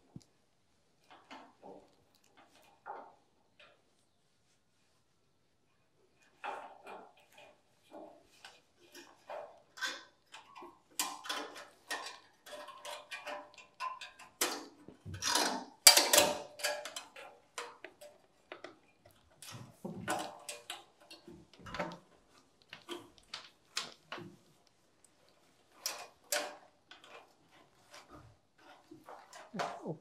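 Scattered light clicks, taps and knocks of hands and tools working on a wall-mounted solar floodlight and its cable up in the roof frame, with short silent gaps between them; the busiest, loudest run of knocks comes about halfway through.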